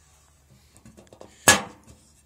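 A single sharp metallic clank with a short ringing tail, about three-quarters of the way through, as the steel lid of a homemade hot-water-tank smoker is shut. Faint scuffs and small rattles lead up to it.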